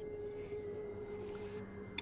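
Quiet ambient background music: one soft, steady held tone, with a fainter lower note joining about a second in.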